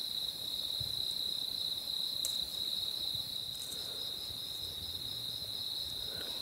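Crickets chirping: a steady, high-pitched pulsing trill that carries on without a break.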